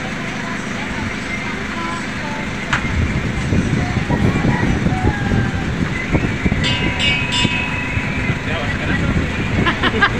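Motorized sampan's engine running at low speed, with water washing along the wooden hull as the boat moves along the riverbank. The sound grows louder about three seconds in.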